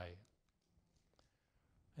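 Near silence in a small room, broken about a second in by one faint click from a handheld presentation remote advancing the slide.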